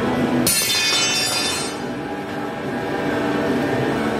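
Background music throughout. About half a second in comes a sudden high metallic screech with a ringing edge, lasting about a second and a half, typical of a steel round bar scraping against a metal jig as it is picked up and set in place.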